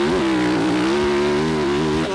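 Yamaha YZ450 four-stroke single-cylinder motocross engine running under steady throttle at high revs, its pitch dipping briefly just after the start and then wavering slightly, with wind noise over the helmet-mounted microphone.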